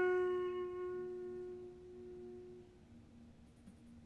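A single held flute note, clear and steady in pitch, slowly fading out and dying away about three seconds in.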